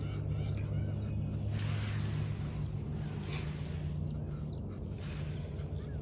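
A steady low engine drone, with a faint hiss that swells briefly about two and three seconds in.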